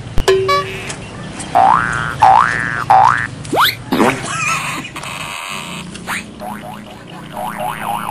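Added cartoon comedy sound effects. After a sharp click, three quick upward-swooping tones play in a row, then a steeply rising whistle and a wobbling springy boing, with more small warbling glides near the end.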